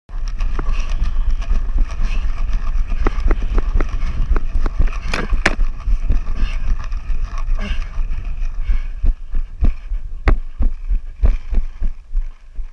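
Running footsteps on dry dirt, heard from a camera mounted on a paintball marker, with a steady low rumble of wind and handling noise and sharp knocks and clatter of gear throughout. The sharpest two knocks come a little after five seconds.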